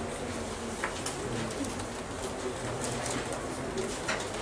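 Faint low cooing of a bird, heard intermittently over steady room noise, with a few light clicks.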